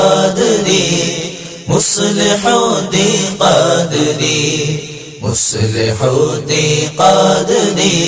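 Unaccompanied devotional singing of an Urdu manqabat: voices sing over a steady chanted vocal drone, with a short breathy burst twice.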